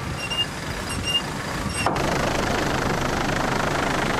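Wind and sea noise rushing over the deck of a racing yacht. About two seconds in it changes to a steady, slightly pulsing engine noise, typical of a helicopter filming the yacht from above.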